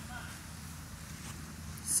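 Quiet outdoor background: a low steady rumble with faint voices at the start and a brief hiss near the end, as a dog's bark is about to begin.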